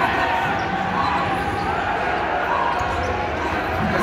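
Basketball being dribbled on a hardwood court amid arena crowd noise and the chatter of nearby spectators.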